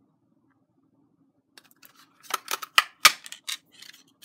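A Stampin' Up Label Me Fancy handheld paper punch pressed down through cardstock. A run of clicks and crunches starts about one and a half seconds in, and the loudest is a sharp click about three seconds in.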